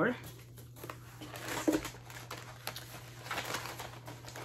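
Paper cutouts being handled and shuffled: an irregular rustling and crinkling of paper with small taps.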